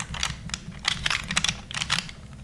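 Rubik's First Bear, a bear-shaped plastic twisty puzzle, being turned quickly in the hands to scramble it: a fast, irregular run of plastic clicks and clacks as its layers turn.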